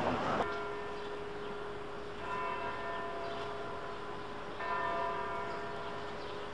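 A bell, struck twice about two and a half seconds apart, each stroke ringing out over a steady low hum tone. Before it, a burst of street noise cuts off suddenly a fraction of a second in.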